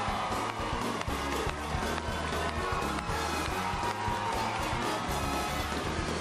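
Talk-show house band playing upbeat walk-on music with a steady, repeating bass line.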